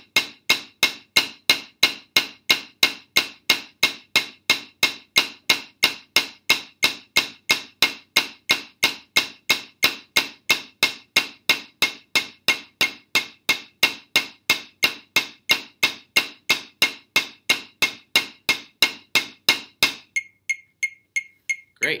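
Wooden drumsticks striking a rubber practice pad with even single strokes, about three a second, in time with a metronome at 180 beats a minute. The strokes stop about two seconds before the end, leaving only the fainter metronome beep.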